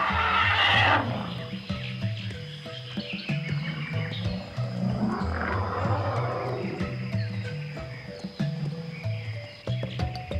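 Theme music with a stepping bass line and light clicking percussion, with wild animal calls laid over it: a loud, harsh call in the first second and a lower, rougher call about five seconds in.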